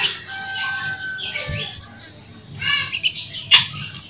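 Birds calling and chirping, with short pitched calls and one held whistled note in the first second. There is a single sharp click about three and a half seconds in.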